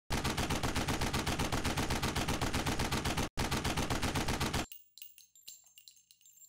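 Machine-gun fire sound effect: a rapid, even run of shots at about ten a second, with a short break a little after three seconds. The fire stops at about four and a half seconds and gives way to a faint scatter of light metallic clinks of falling shell casings.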